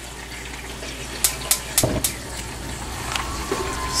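Dry red chillies frying in a little oil in a nonstick pan: a steady sizzling hiss, with a few sharp clicks a little over a second in and a faint steady tone near the end.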